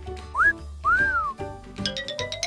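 Two cartoon-style whistle glides over light children's background music: a short rising one, then one that rises and falls.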